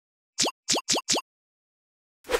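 Four quick cartoon 'pop' sound effects, each a short blip gliding upward in pitch, about a quarter second apart. They mark the four answer options popping onto the screen one after another.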